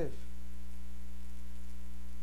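Steady electrical mains hum, a low, unchanging buzz that is loud and constant under the pause in speech.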